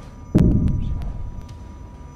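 A single loud, heavy thud about a third of a second in, its low boom fading away over about a second.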